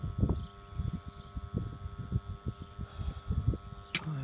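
Wind buffeting the microphone in irregular low gusts, with one sharp click near the end.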